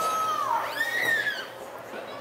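Two drawn-out, high-pitched yells from a voice: the first is held level and drops away about half a second in, and the second rises and falls over the next second.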